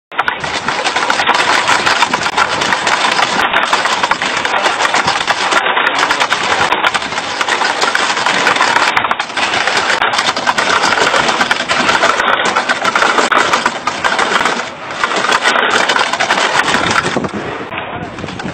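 A well pulley creaking and rattling steadily as rope runs over it while water is hauled up. The sound is loud and dry-sounding, dips briefly near the end, then eases off.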